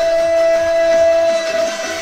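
A male singer holds one long note into a microphone over backing music; the held note ends about a second and a half in while the accompaniment carries on.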